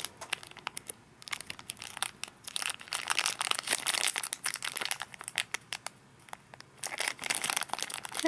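Plastic film wrapper of a Kinder Delice snack cake crinkling as it is held, turned and flattened in the fingers: irregular crackles, heaviest in the middle and again near the end.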